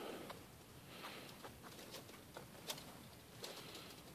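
Near silence: faint night ambience with a few scattered faint ticks and snaps.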